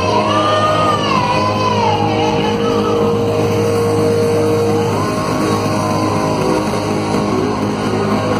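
Live rock band playing loud, with guitars, bass and drums. A lead melody with bending notes rises and falls twice, and a long note is held in the middle.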